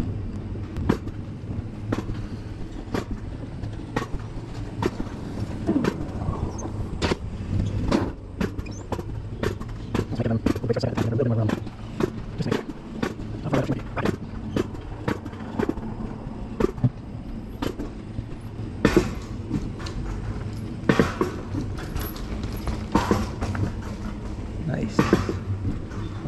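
Mountain-coaster cart running along its steel rail track, with a steady low rumble and sharp clacks about once or twice a second as it rolls over the track.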